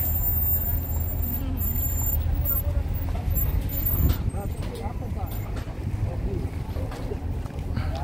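A GMC SUV's engine running close by, a steady low rumble, with a crowd's voices murmuring in the background.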